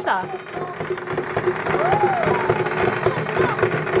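The motor and gears of a battery-powered Baby Alive Go Bye Bye crawling doll running as it crawls: a steady mechanical whirr with rapid ticking. A brief pitched voice-like sound comes about two seconds in.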